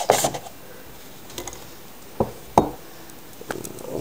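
Metal butterfly knives being set down on a wooden tabletop: a brief rustle at the start, then two sharp knocks about half a second apart.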